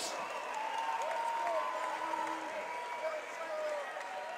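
Arena crowd applauding and cheering after a fight, with scattered shouting voices over a steady wash of noise.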